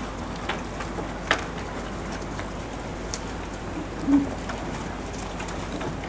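Pages of a Bible being turned: a few soft clicks over the steady hiss of a headset microphone, and a brief low hum about four seconds in.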